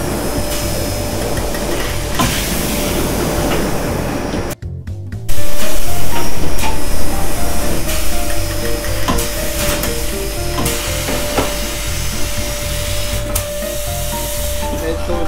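Wet barrel-polishing machine running: a CBX400F wheel mounted on its spindle churns through abrasive media and foaming compound, a steady rushing, grinding noise. The sound drops out briefly about four and a half seconds in and comes back louder.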